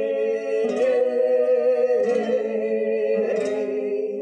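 Flamenco cante for a caña: a male voice holding long, wavering melismatic notes over Spanish guitar, with a guitar strum about every second and a half.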